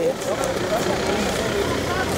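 Steady outdoor background noise with a low rumble.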